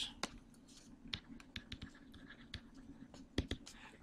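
Faint, irregular taps and scratches of a stylus writing on a tablet screen.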